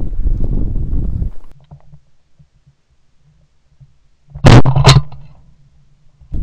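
Two shotgun shots in quick succession, a third of a second apart, about four and a half seconds in, by far the loudest sound here. Before them a low rumble of wind on the microphone dies away, leaving a couple of seconds of near quiet.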